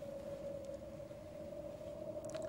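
Faint steady drone on a single held note, with low background hiss.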